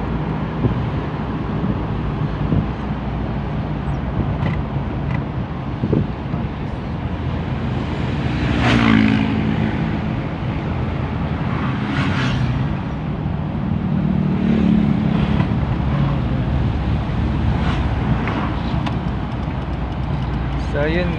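Steady engine and road noise heard from inside a moving car at city-street speed. There are two brief louder noises, about nine and twelve seconds in, and a low swell a little later.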